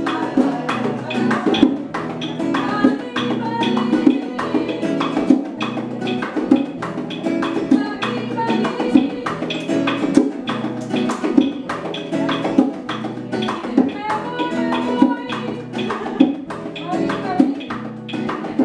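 Live acoustic Cuban son: a woman singing over a nylon-string classical guitar and hand-played bongos, with steady, frequent drum strikes.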